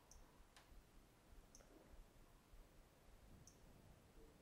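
Near silence with a few faint, sharp clicks, spaced irregularly, from the physical home button of a Samsung Galaxy A3 being pressed.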